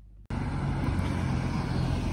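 Street traffic noise picked up by a phone's microphone, with cars going by, cutting in suddenly about a quarter second in.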